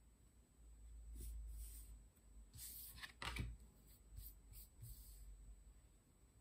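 Faint rustles and soft clicks of a tarot deck being handled, the cards sliding against each other, with a sharper click just past the middle.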